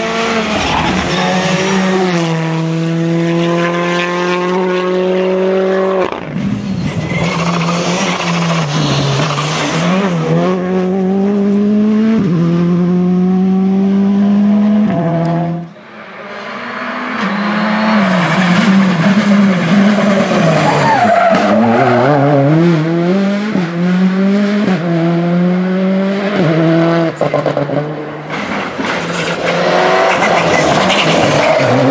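Turbocharged four-cylinder Rally2 cars, starting with a Hyundai i20 Rally2, driven flat out on a tarmac stage one after another. The engines rev hard, stepping up and down through gear changes and lifts for the bends, with tyre squeal. The sound breaks off sharply about halfway, then a second car is heard.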